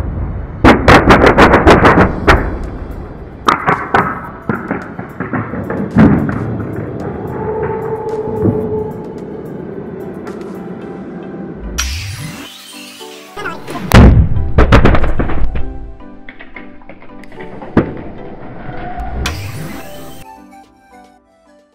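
Rapid string of loud bangs as a heap of LPG-filled balloons ignites and bursts in a fireball, followed by scattered single bangs and another cluster of bangs later on, over background music.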